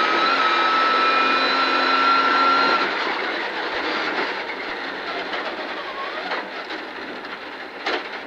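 Rally car engine running flat out with a high steady whine. About three seconds in the note drops away as the driver lifts and brakes hard, leaving duller tyre and road noise.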